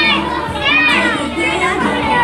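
A group of young children's voices singing and calling out together over recorded music, with a high-pitched vocal swell about three-quarters of a second in.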